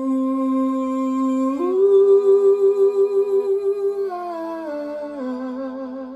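A male voice sings a wordless 'ooh, aah' vocalise in long held notes over a sustained violin accompaniment. The voice steps up about two seconds in and holds the note with vibrato, then steps back down note by note.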